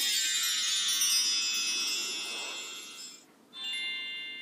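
Shimmering bell-like chime music from the closing logo of a Santa video message. It slowly fades, breaks off briefly, and a fresh set of chime tones rings out just before the end.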